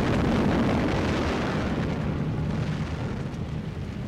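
A bomb explosion: a sudden blast that is loudest in the first second and rumbles slowly away, over a low steady drone.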